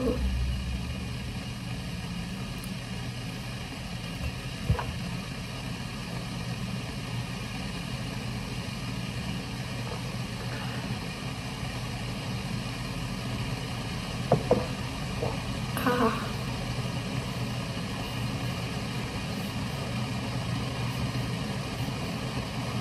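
A steady low mechanical hum, like a motor running, with a few small knocks and clicks over it.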